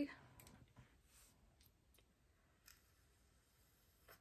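Near silence with a few faint, short clicks scattered through it, like small objects being handled.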